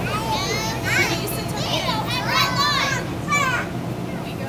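Young children's excited high-pitched voices, shouting and chattering over one another, over a steady low background hum.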